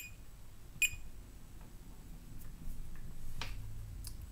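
Digital multimeter giving two short beeps, just under a second apart, as it is switched into diode-test mode. A faint click follows later.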